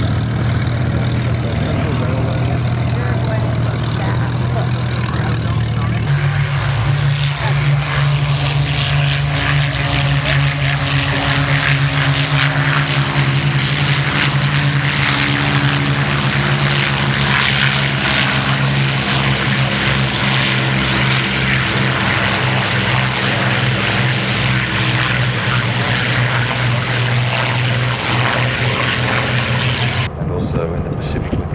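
Piston engines of Second World War propeller fighters running in a steady, loud drone. A Spitfire's engine runs as it taxis. About six seconds in, the sound cuts to many propeller aircraft engines, whose pitch shifts slowly as a large formation passes overhead.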